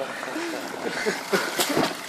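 Water splashing and sloshing as a man wades out of the shallow pool at the bottom of an inflatable water slide, with faint voices in the background.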